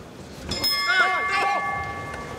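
Boxing ring bell struck once about half a second in, ringing on and slowly fading, signalling the end of a round.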